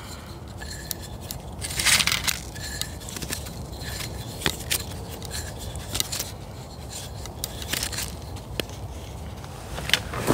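Wooden toggle stick scraping and clicking against the cord and wooden frame as it is twisted to tighten the windlass cord and tension a homemade bucksaw's blade, with one louder scrape about two seconds in.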